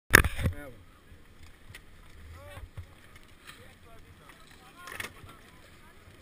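A loud sudden burst right at the start, then faint voices of people talking and a low wind rumble on a helmet camera's microphone, with a smaller burst about five seconds in.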